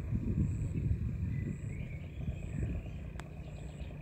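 Outdoor background: an irregular low rumble, with a faint steady high tone and faint high chirps repeating under it. A single sharp click comes about three seconds in.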